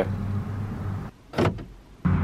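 A steady low hum in a car's cabin that cuts off about a second in, then a single short click.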